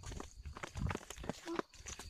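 Footsteps on a dirt track at a walking pace, a string of irregular soft scuffs and thuds.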